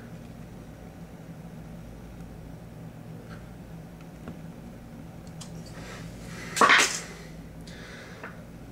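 A steel tape measure's blade retracting into its case in one short, loud rattling zip about two-thirds of the way in, over a steady low room hum.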